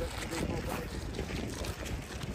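Wind rumbling on the microphone outdoors, under faint chatter of passers-by.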